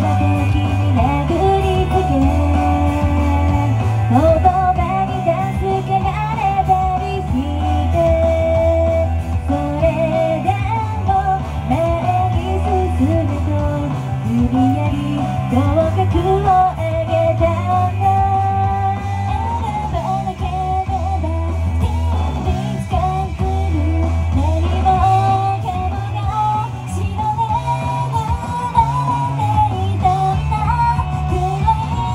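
Upbeat idol pop-rock song with electric guitar and a steady bass line, and a young woman singing the melody into a handheld microphone.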